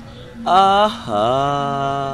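A man's voice chanting: a short rising note about half a second in, then one long held note lasting about a second.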